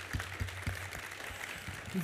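Audience applauding in a cinema auditorium: an even patter of many hands clapping, with a low steady hum underneath.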